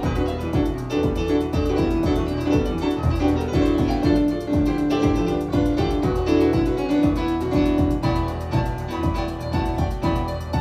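A piano and keyboard duet played live: grand piano together with an electric-piano-like keyboard, busy chords and melody over a steady pulsing bass line.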